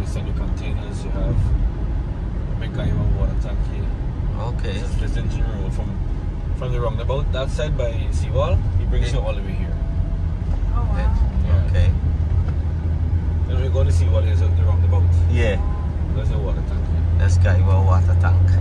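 Inside a moving car: steady engine and road rumble that swells into a stronger low drone in the last few seconds, with indistinct voices now and then.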